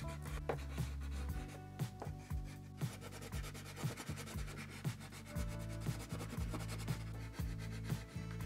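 Water-soluble wax crayon rubbing across black paper in quick, short drawing strokes: a dense, irregular run of small scratches. Steady low tones sit underneath.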